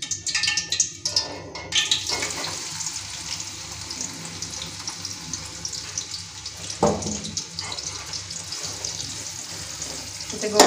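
Sliced onions sizzling as they fry in hot ghee in an aluminium pot: a few clinks of utensils on the pot, then a steady sizzle from about two seconds in. A single knock against the pot comes near seven seconds.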